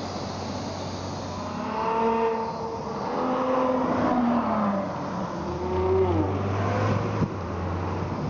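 Porsche 911 GT3 RS's naturally aspirated flat-six engine pulling away and accelerating. Its pitch climbs and drops several times as it revs through the gears, over a steady low traffic hum.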